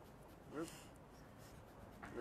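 A voice calling out one short word, "up", about half a second in, over a faint scratchy background noise.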